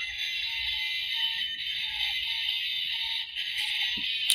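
Tinny electronic music from a Road Rippers Maximum Boost toy car's small built-in speaker, running on low batteries. Its sound sits in a thin, high band with a faint wavering tune under it, and dips briefly near the end.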